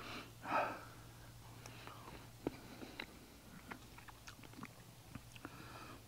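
Quiet eating: faint chewing and scattered light clicks of a fork against a small ceramic-coated frying pan. There is a soft murmur about half a second in.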